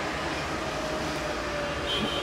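Steady background noise with a faint steady hum, level and unchanging.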